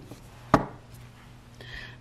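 A single sharp tap about half a second in as a deck of oracle cards is handled against the table while a card is drawn.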